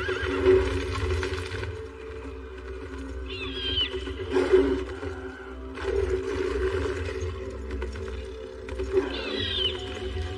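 Dramatic film score with a steady low drone and heavy hits, over which a high, wavering, falling animal call sounds twice: once about three seconds in and again near the end.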